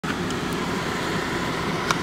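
A car driving slowly through deep snow, heard from inside the cabin: a steady low hum of the engine and tyres, with one short click just before the end.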